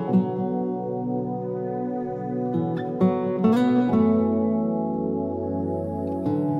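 Background music: slow plucked guitar with notes left ringing.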